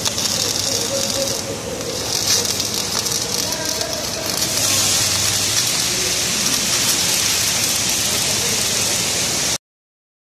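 Electric arc welding: a steady crackling hiss from the arc. It cuts off suddenly near the end.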